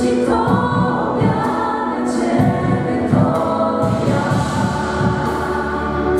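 A worship vocal group of mixed male and female voices singing a Polish song in harmony through microphones and a PA, with a steady beat underneath.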